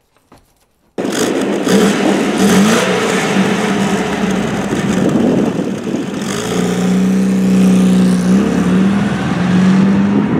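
1973 MGB's four-cylinder pushrod engine running as the car is driven. The engine cuts in suddenly about a second in, loud, and its pitch rises and falls with the throttle before settling steadier near the end.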